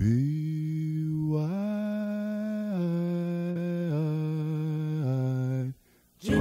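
A single voice humming a slow wordless melody of long held notes, first stepping up and then stepping down in pitch, stopping shortly before the end.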